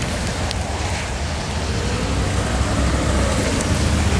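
Steady outdoor noise: a constant low rumble with an even hiss over it, and a couple of faint crinkles from a plastic bag being handled.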